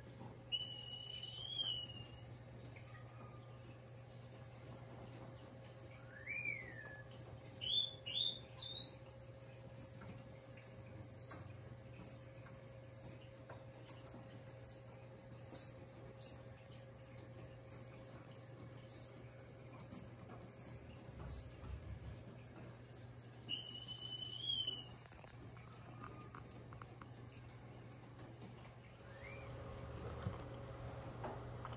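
Small birds calling: a few slurred whistles and a long run of short high chirps, several a second through the middle, over a faint steady hum.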